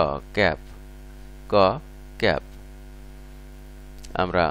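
Steady electrical mains hum throughout, under a voice saying a short word, 'book', four times in the first two and a half seconds.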